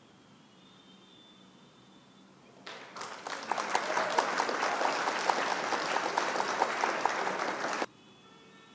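Crowd applause sound effect marking the answer reveal: after near silence, clapping starts about two and a half seconds in, swells over a second, and cuts off suddenly just before the end.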